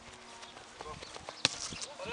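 A football being kicked: a few short, sharp thuds, the loudest about one and a half seconds in.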